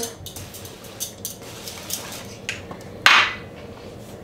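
A spray bottle misting the trays of cut vegetables: one short hiss about three seconds in, after a few faint clicks and knocks of handling.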